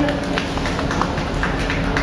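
A few scattered hand claps from onlookers as an acoustic guitar song comes to an end, with crowd chatter and a steady background hum.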